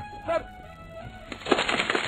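Ice-cube sound effect: a rush of clinking and cracking that starts about two-thirds of the way through and grows louder to the end. A brief vocal sound comes just before it, near the start.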